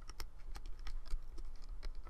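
Plastic hook clicking and tapping against the plastic pins of a Rainbow Loom as rubber bands are pulled back and looped, in quick irregular clicks several times a second, over a low steady hum.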